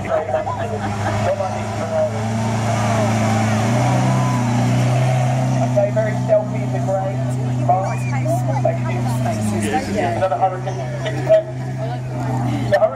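Lamborghini Aventador SV's V12 running at low revs as the car creeps past close by. Its note rises a little about four seconds in and drops back near nine seconds. Spectators chatter over it.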